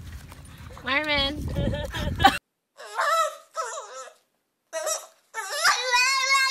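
French bulldog puppy howling in several short, wavering bouts with brief silences between them; the last and longest starts near the end.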